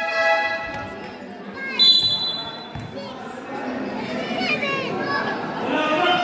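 Spectators and players shouting and chattering around a basketball game. A referee's whistle blows one steady high blast of nearly a second, about two seconds in.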